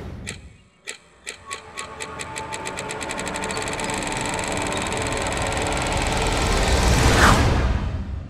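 Electronic outro sting: a string of clicks that comes faster and faster until it runs together into a buzz, growing steadily louder, and peaks near the end with a rising whoosh.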